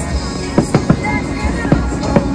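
Aerial fireworks bursting: about five sharp bangs in quick succession over music.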